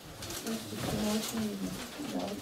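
Indistinct low voices talking in a small room, no clear words.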